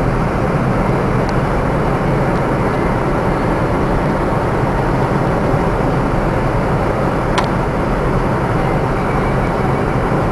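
Steady road and engine noise of a car driving at speed, heard inside the cabin, with one brief click about seven seconds in.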